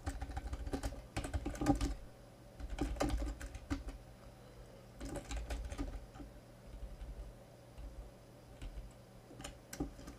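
Computer keyboard being typed on in short bursts of keystrokes, thinning to a few single key presses near the end.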